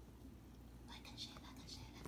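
Faint whispering from a person, in soft breathy patches starting about a second in.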